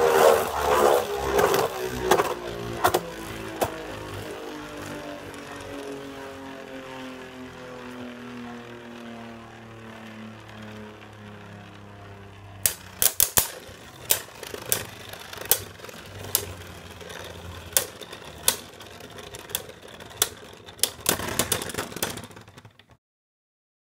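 Two Beyblade Burst tops spinning in a plastic stadium: a clatter of clashes at first, then a steady whir that slowly falls in pitch as they lose spin. From about halfway, sharp clicks of the tops knocking together come roughly once a second, with a flurry of hits near the end as one of them stops spinning.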